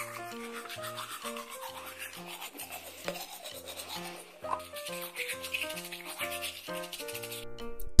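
Fast scratchy rubbing of a small plastic toy toothbrush scrubbed against a doll, play-acting brushing its teeth, over background music with a steady bass line; the rubbing stops about half a second before the end.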